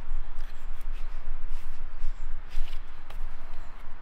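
Soft rustling and scuffing of a foam-padded SAM splint and the sleeve beneath it as the splint is pressed and moulded around a forearm. There are a few faint crackles and a steady low rumble underneath.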